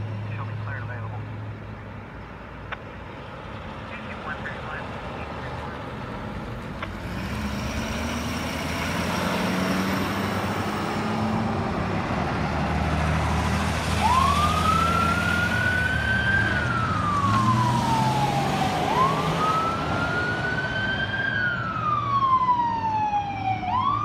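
Ambulance pulling away with its engine noise building, then about halfway through its siren starts in a slow wail: a quick climb in pitch and a long fall, repeating about every five seconds. It is running Code 3 with a patient on board.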